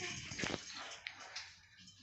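A baby whimpering and fussing, loudest in the first half second and then fading.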